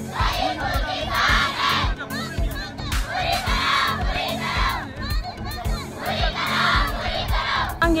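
A crowd of schoolgirls chanting protest slogans in unison, loud group shouts coming in rhythmic bursts every second or two.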